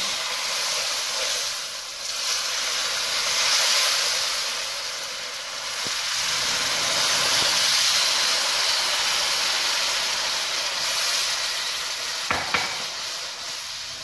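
Hot water poured into semolina roasted golden in hot oil, sizzling and bubbling hard in a pan as it is stirred with a wooden spatula; the sizzle swells and eases. A single sharp tap near the end.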